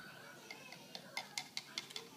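A purple plastic stirrer clicking and scraping against the side of a plastic measuring cup of liquid as it is stirred: a run of faint, irregular clicks, several a second, starting about half a second in.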